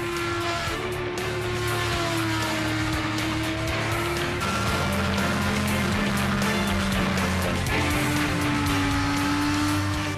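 Kawasaki Ninja sport bike engine held at high revs on a race track. The pitch glides slowly and jumps to a new level twice as the shots change, over background music.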